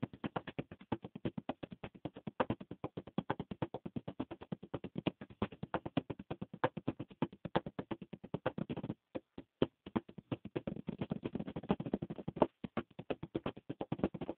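Fast percussive tapping in a rhythm of about ten strokes a second, uneven in loudness, with a short break about nine seconds in.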